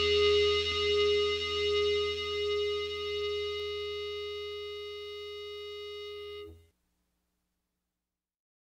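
The final held chord of a rock band's demo recording, electric guitar ringing out with a slow waver and gradually fading, then cutting off sharply about six and a half seconds in.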